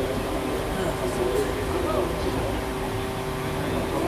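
Stock-car engine running at a steady idle, with voices faintly in the background.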